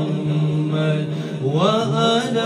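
A man singing a devotional kalam into a microphone: one long held low note, then his voice glides up in pitch near the end.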